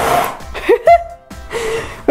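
A woman's short, excited laughs and gasps just after a powder fireball, with the rushing noise of the fireball cutting off right at the start.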